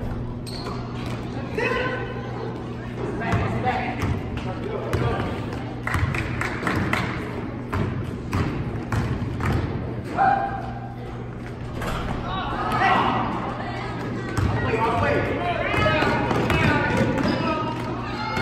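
Basketball game in a gym: the ball bouncing and thudding on the court floor among players' and spectators' voices and shouts, all echoing in the hall, over a steady low hum.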